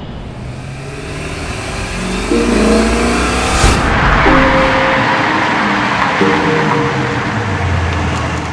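A BMW i8 sports car drives up, its engine and tyre noise swelling over the first few seconds and then holding steady. There is a sharp crack about three and a half seconds in, with sustained music notes underneath.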